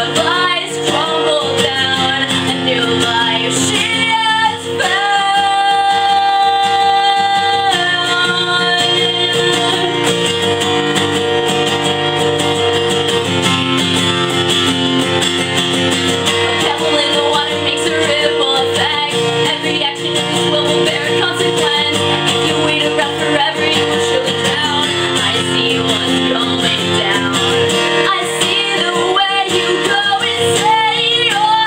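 Acoustic guitar strummed steadily while a voice sings over it, with one long held sung note about five seconds in.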